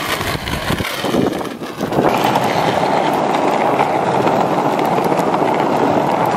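Plastic penny board's wheels rolling over rough asphalt: a steady gritty rumble, uneven with a few knocks at first, that becomes louder and steady about two seconds in.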